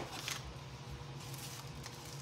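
Quiet room with the low, steady hum of a running kitchen appliance, most likely the air fryer cooking French toast, and a couple of faint clicks from packaging being handled.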